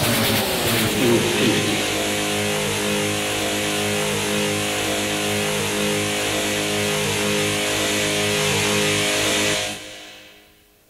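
Industrial music: a distorted, noisy guitar drone of several sustained tones over a hiss-like wash. The drone slides down in pitch in the first second or so, then holds steady, and fades out quickly just before the end as the track finishes.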